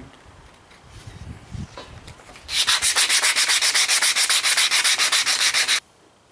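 Sandpaper rubbed by hand over a wooden axe handle: after a quiet start with faint handling, rapid, even back-and-forth scratching strokes begin about two and a half seconds in and cut off suddenly near the end.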